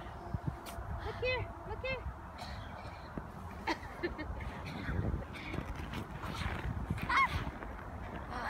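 Short rising-and-falling vocal hoots without words, two close together about a second in and a higher one near the end, over a low rumbling background.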